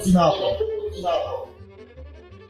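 A man speaking briefly, then a quieter stretch of faint background music over a low steady hum.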